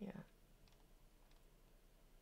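Near silence after a short spoken "yeah", with a few faint clicks.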